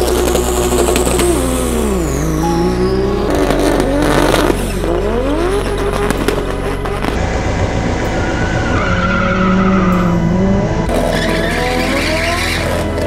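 Drag cars' engines revving hard and pulling away down the strip, their pitch sweeping down and back up several times through gear changes, with tire squeal. Background music runs underneath.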